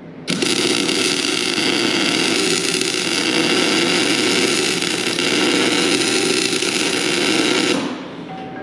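Electric welding arc burning steadily while a tack weld is laid on a steel axle hub. It strikes just after the start, runs evenly for about seven and a half seconds and cuts off just before the end.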